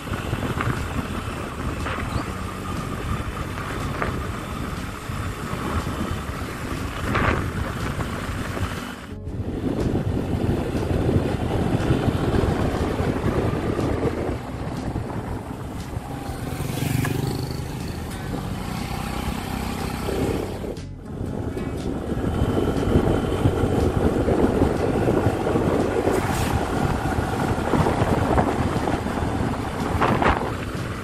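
Wind rushing over the microphone of a camera on a moving motorcycle, with the bike's engine running underneath. The sound drops out briefly twice, at edit cuts.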